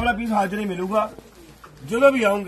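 Only speech: a man's voice talking, with a short quieter lull in the second half.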